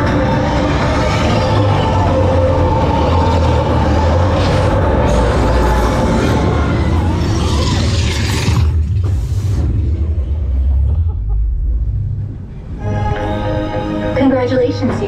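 TRON Lightcycle Run roller coaster in motion: the ride's on-board electronic soundtrack plays over the heavy low rumble of the train. A rush of noise comes about eight to nine seconds in, and the level dips briefly before the music picks up again near the end.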